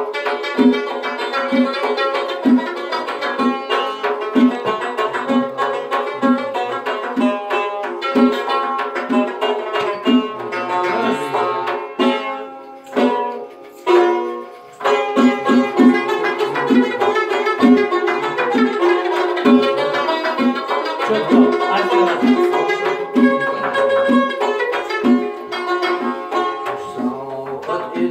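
Live music on a long-necked plucked lute with a steady pulsing beat; the playing thins out and pauses briefly about 12 seconds in, then starts up again about 15 seconds in.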